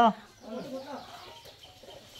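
Domestic chicken clucking faintly in short calls, just after a person's voice breaks off.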